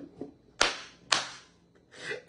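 Two sharp claps about half a second apart, at the tail end of a man's laughter.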